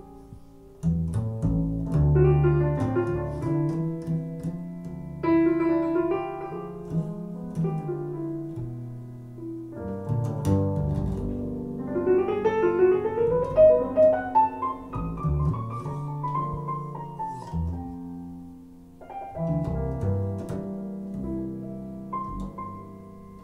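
Jazz piano solo over a walking double bass, with a rising run of notes about midway, played back through hi-fi loudspeakers in a room.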